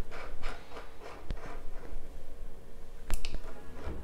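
Clicks and soft taps of hands working an ultrasound scanner's control panel, with a few sharp clicks, the loudest about three seconds in.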